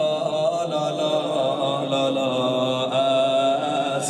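A man's voice chanting a slow, mournful Persian lullaby lament, unaccompanied, on long held 'la la' notes that slide gently between pitches.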